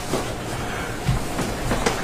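Room noise with a steady low rumble, and a few light knocks and rustles about a second in and again near the end.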